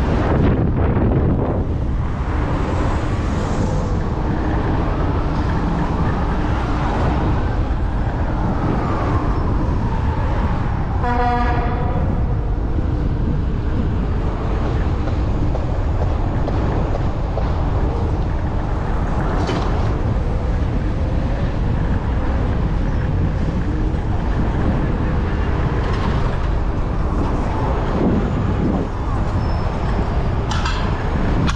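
Steady city street traffic noise with wind rumble, heard from a scooter riding in traffic. A single short car horn honk sounds about eleven seconds in.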